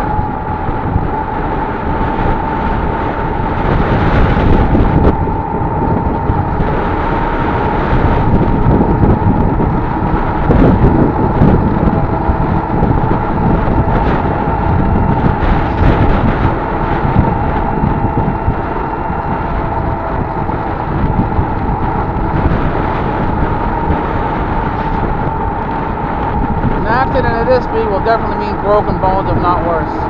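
Wind buffeting the microphone over the road noise of a moving vehicle, with a steady whine held through it.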